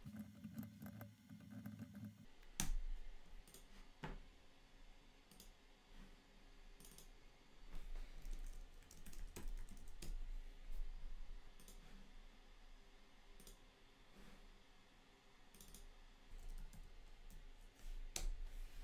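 Faint computer keyboard typing and mouse clicks, irregular and sparse, with a few sharper clicks in the first few seconds.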